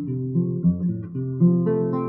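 Music: an acoustic guitar playing a short instrumental phrase of changing plucked notes between the sung lines of a Cuban guajira song.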